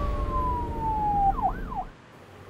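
Ambulance siren sounding a slow falling wail that breaks into two quick rising-and-falling yelps near the end, over a low rumble.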